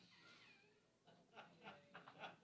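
Near silence in a quiet room: a brief high-pitched sound falling in pitch at the start, then faint voices.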